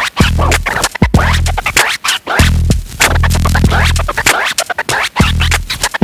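Turntable scratching: a record sample pushed back and forth in quick rising and falling sweeps, chopped into short cuts, over an electronic hip-hop beat with a heavy bass note about once a second.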